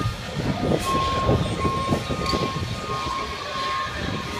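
Elevated subway train passing close by: a low, dense rumble of wheels on the track, with a steady high-pitched squeal from about a second in until near the end.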